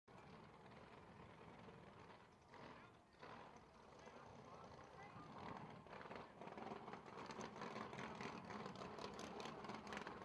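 Faint crowd chatter and distant voices mixed with a low background din, slowly growing louder.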